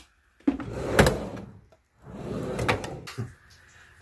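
Sliding, rubbing handling noises, twice, each lasting a little over a second, with a sharp knock about a second in.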